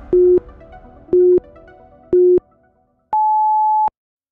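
Workout interval timer counting down: three short, low beeps a second apart, then one longer, higher beep that marks the end of the rest and the start of the next set. Background music is fading out under the first beeps.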